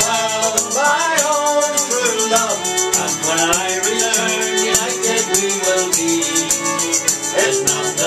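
Live folk band playing a traditional sea song: a fiddle carries the melody over a strummed acoustic guitar, while a hand-held shaker keeps a steady rhythm.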